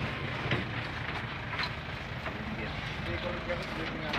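Steady engine and road noise of a moving vehicle, with faint voices talking underneath.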